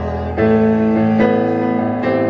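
Digital piano playing a hymn in sustained chords, with a new chord struck about half a second in and another change a little past halfway.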